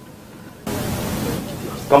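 Microphone hiss: a steady rush of noise that sets in abruptly about two-thirds of a second in and holds, easing slightly near the end as speech resumes.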